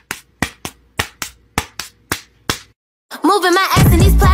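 A run of about ten sharp claps in an uneven rhythm with no music under them, followed by a short gap; near the end the music comes back with a singing voice.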